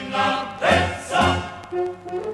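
Introduction of a 1970 Yugoslav military march-song: a choir singing over band accompaniment in three loud swells, thinning out and dropping in level near the end.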